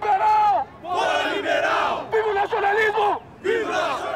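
Man shouting political slogans in Portuguese through a handheld megaphone ("Liberals out", "Long live nationalism"). He gives about four long, held shouted phrases with short breaks between them.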